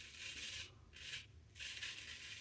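A straight razor cutting stubble through shaving lather in three short, faint strokes, less than a second apart. The razor is a Palmera 14.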